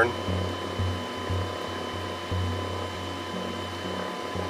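Steady cockpit background hum: a low machine hum that cuts in and out in short spells, under a faint steady high whine and light hiss.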